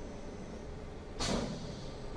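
CNC vertical machining center running with a steady hum of its motors and fans. About a second in comes a short hiss that fades quickly.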